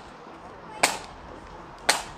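Marching flute band's drum tap: single sharp stick strikes about once a second, keeping the marching step. There are two strikes, one a little under a second in and one just before the end.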